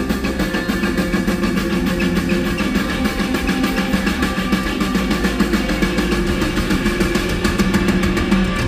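Live rock band playing at full volume: electric guitars and bass over a fast, steady drumbeat from the drum kit and percussion, heard from the audience.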